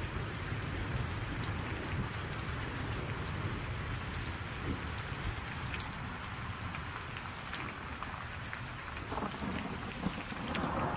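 Thunderstorm: steady rain with a low rumble of thunder underneath, the rumble stronger in the first half.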